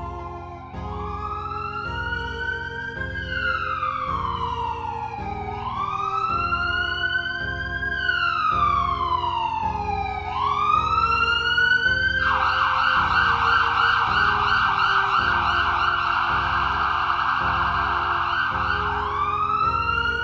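Siren wailing in slow rising and falling sweeps. About twelve seconds in it switches to a rapid yelp for several seconds, then goes back to the wail. Underneath runs a music bed with a steady low beat.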